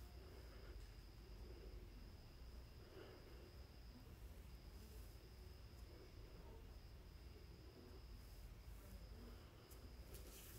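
Near silence: faint room tone with a low hum and a faint, steady high-pitched whine.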